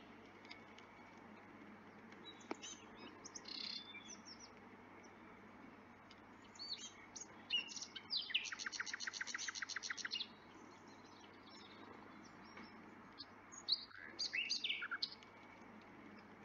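Small songbirds singing and chirping outdoors, with scattered high calls, a fast trill of evenly repeated notes lasting about two seconds in the middle, and another burst of calls near the end, over a faint steady low hum.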